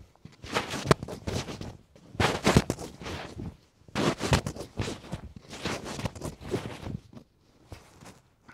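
Karate uniform fabric swishing and snapping in short bursts, a cluster every second or so, as blocks are thrown in quick repetition, with light scuffs of bare feet on foam mats.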